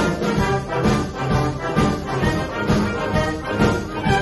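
Concert wind band playing an instrumental passage of a song between sung lines, full ensemble over a steady beat.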